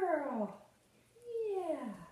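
Large dog giving two drawn-out whining calls, each sliding down in pitch, the second about a second after the first.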